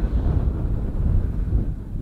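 Wind rumbling on the microphone: a low, uneven rumble.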